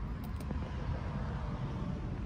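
Engine of a vintage 1930s sedan running, a steady low rumble heard from inside the cabin, with a couple of faint clicks just after the start.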